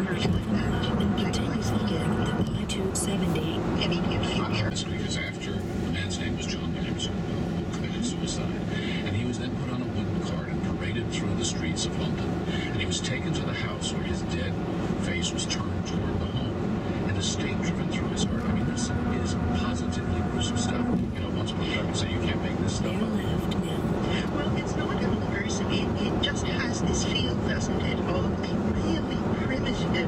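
Steady road and tyre noise inside the cabin of a 2011 VW Tiguan SEL cruising at highway speed. It runs on 18-inch wheels with 50-series tyres, which the owner believes make it noisier than smaller wheels with taller sidewalls would.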